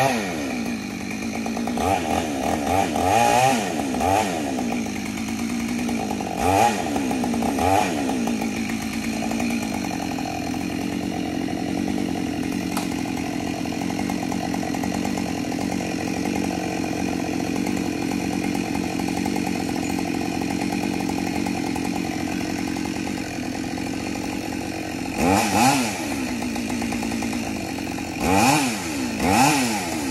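A chainsaw running on a dead tree trunk. It revs up and back down several times in the first eight seconds and again near the end, and holds a steady high speed through the long middle stretch.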